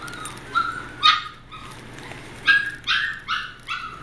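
High-pitched puppy yaps: two single yaps in the first second or so, then a quick run of about six at roughly three a second from halfway through.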